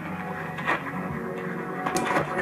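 A Hammarlund SP-600 shortwave receiver's speaker playing a weak AM broadcast on 860 kHz: music and talk from a distant station under a scratchy hash of splatter from a 50 kW station on the adjacent 850 kHz channel.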